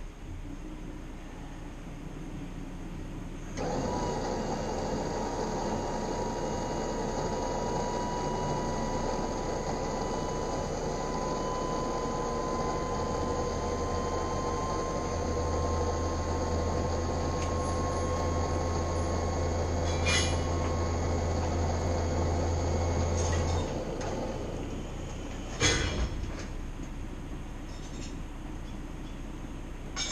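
Log loader's diesel engine and hydraulic system working as the raised cab is lowered: a steady whine, starting a few seconds in, that climbs slightly in pitch, with a deep hum building in its second half, then stops about two-thirds of the way through. A sharp metal clank follows a couple of seconds later.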